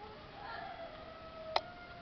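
A long animal call held on a nearly steady pitch for about a second and a half, with a sharp click about a second and a half in.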